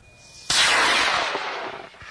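High-power rocket's solid motor igniting about half a second in as the rocket lifts off: a sudden loud rushing roar that fades steadily as it climbs away.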